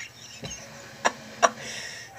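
A man laughing almost silently, the sound held in, with two short, sharp clicking gasps about a second in.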